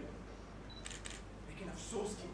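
Lull between lines of dialogue in a theatre: faint room tone with a steady low hum, a brief soft noise about a second in, and a man's voice starting faintly near the end.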